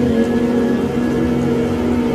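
Slow relaxation music: a flute glides down onto a long low held note over a steady background drone.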